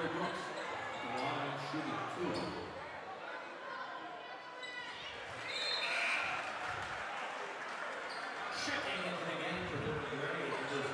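Basketball bouncing on a hardwood gym floor at the free-throw line, over the chatter of a crowd in a large, echoing gym.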